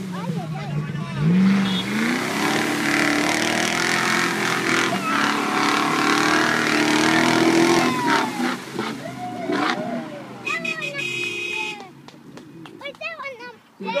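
Off-road 4x4 engines revving hard under load as a stuck Land Rover Discovery is towed out of deep water by a Toyota Land Cruiser. The revs climb about a second in and hold high until they ease off around eight seconds in, after which people's voices and shouts take over.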